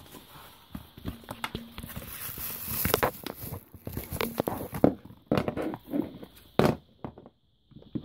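Handling noise: irregular knocks and taps with a stretch of rustling, as the nightlight and its packaging are moved about on a wooden floor. The sharpest knocks fall in the latter half.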